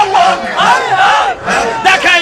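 A man loudly chanting an Islamic zikir into microphones in short, repeated rising-and-falling phrases, with a crowd of men chanting along.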